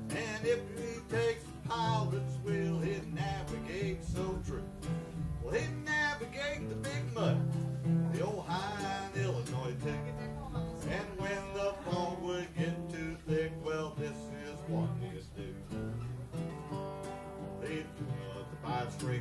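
An acoustic guitar strummed in a steady country/bluegrass rhythm while a second, smaller acoustic string instrument picks a melody over it.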